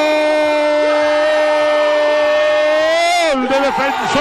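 Radio football commentator's long goal cry, a single "gol" held steady on one high pitch for about three seconds, then bending up and sliding down before he breaks into rapid talk near the end.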